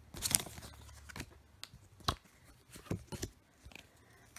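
Hands handling a torn-open Pokémon trading card booster pack and its cards: a short rustle of the foil wrapper, then a few light clicks and taps, the sharpest about two seconds in.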